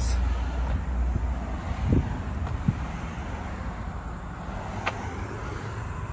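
Steady low outdoor rumble on a handheld phone microphone, heaviest in the first second, with a few faint knocks as the phone is carried along the car.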